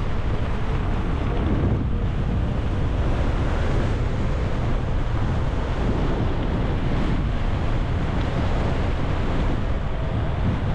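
Wind buffeting a GoPro microphone on a moving bicycle: a loud, steady rushing noise, heaviest in the low end.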